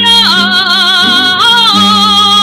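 Female jota singers holding long notes with wide vibrato. The line drops in pitch just after the start and shifts again about a second and a half in, over a steady guitar accompaniment.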